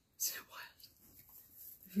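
A woman's short breathy sound a fraction of a second in, followed by faint room tone. Her voice starts again right at the end.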